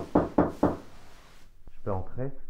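Four quick, evenly spaced knocks on a door, about four a second.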